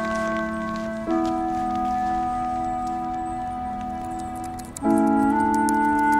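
Background music of sustained chords, each held for a second or two before shifting to the next, louder for the last second.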